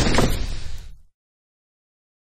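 Intro sound effect: the tail of a heavy impact hit fading out over about a second, then cutting to silence.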